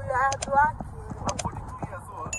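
A voice briefly at the start, then a run of short sharp clicks and clinks over a low murmur of restaurant-room noise.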